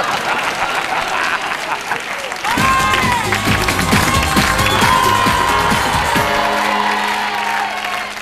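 Studio audience applauding. About two and a half seconds in, music with a pulsing bass beat and a melody comes in and plays under the applause.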